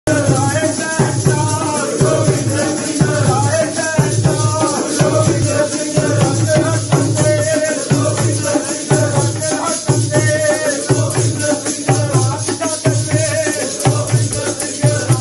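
Sikh devotional singing (kirtan) over a steady drum beat of about two strokes a second, with a jingling percussion running through it.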